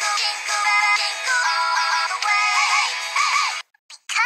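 A sung Christmas pop song with full backing music, carrying the lyric "jingle", played back from the video. It cuts off suddenly about three and a half seconds in.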